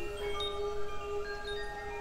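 Soft meditation background music: chime tones ringing in one after another and fading over a steady held low note.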